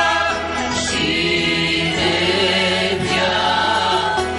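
A choir singing held, sustained notes together, accompanied by a small ensemble of plucked strings and keyboard.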